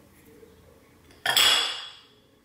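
A metal fork clinks against a ceramic plate once, a little over a second in, ringing briefly as it dies away.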